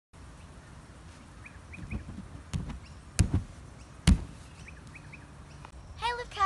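Dull thumps of hands and feet landing on an inflatable air track during a tumbling pass: a handful of hits in the middle, the two loudest about a second apart. Birds chirp briefly in the background.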